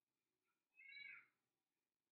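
Near silence broken about a second in by one faint, short high-pitched cry, like an animal's call, lasting about half a second and falling slightly in pitch.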